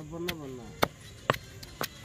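Pestle pounding grated coconut, shallots and garlic in a stone mortar: sharp knocks about two a second, four in all. A man's short voiced murmur sounds over the first knock.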